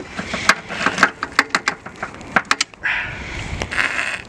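Sharp, irregular clicks and knocks of parts in a car's engine bay as something stuck in there is worked free, followed by about a second of rustling near the end.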